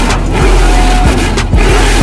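Carbureted V8 on an engine run stand, running loud through open headers, with hip-hop music and its steady beat underneath.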